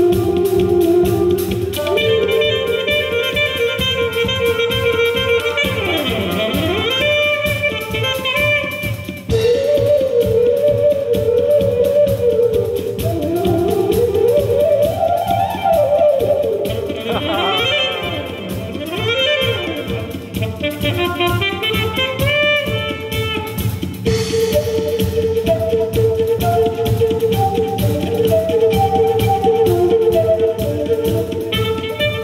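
Live fusion ensemble of bamboo flute, saxophone, tabla, drum kit and keyboard playing. A lead line of held notes, fast runs and quick up-and-down pitch sweeps runs over a steady percussion beat.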